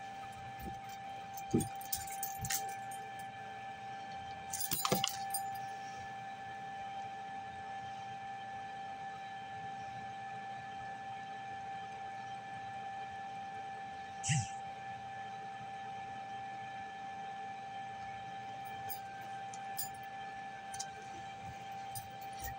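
A steady high-pitched whine with fainter overtones, over low room noise. There are a few faint clinks and knocks, including a short clatter about five seconds in.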